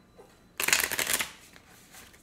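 A deck of cards shuffled by hand: one quick riffle of clicking card edges lasting about half a second, starting about half a second in.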